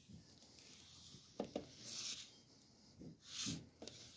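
Hardcover books being handled on a library shelf: a few light knocks as books tip against each other and the shelf, and two brief stretches of sliding, rustling noise as a book is drawn out.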